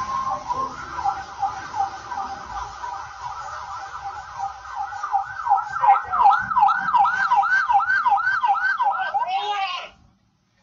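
Siren wailing up and down in repeated sweeps, quickening to about three sweeps a second in the last few seconds and then cutting off suddenly.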